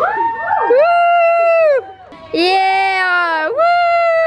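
Girls' voices singing loud, long held notes, about three of them, each lasting around a second and sliding down in pitch at its end, as a sung catwalk accompaniment.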